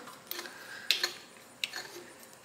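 A few light metal clicks from the hand wheel and its clutch parts on an antique Singer 27 sewing machine as the wheel is turned and tightened by hand.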